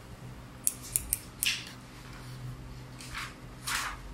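A lipstick being clicked: three sharp clicks in quick succession, followed by a few short, scratchy swishes.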